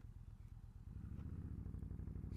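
Yamaha V Star 1300's V-twin engine running low and even, then pulling harder and louder about a second in as the bike gets going.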